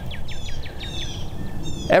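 A songbird singing a long, even series of quick down-slurred whistled notes, about five a second, with low wind rumble on the microphone underneath.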